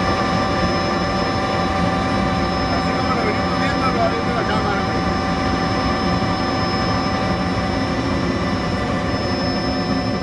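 Helicopter in flight heard from inside the cabin: a steady turbine whine with several held tones over a constant engine and rotor drone.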